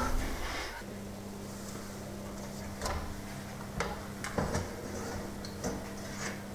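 An oven being opened and a cake pan taken out on its metal rack: several scattered sharp clicks and knocks from the door, rack and pan, over a steady low hum.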